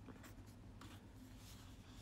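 Faint rustling and rubbing of a paper tear-off calendar as it is handled.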